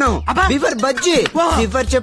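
A man's voice singing a sing-song tune over a low beat that thuds about every one and a half seconds.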